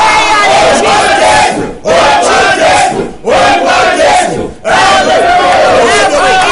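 Loud shouting of several voices at once, in phrases about a second and a half long with short breaks between: fervent shouted prayer.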